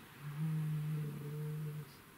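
A person's closed-mouth hum, one steady low 'mmm' held for about a second and a half, a thinking pause between remarks.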